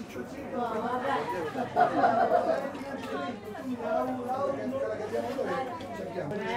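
Indistinct chatter of several people talking at once in a room, with no single clear voice.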